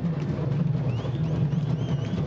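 Candombe drums of a comparsa's drum line playing a dense, steady rhythm.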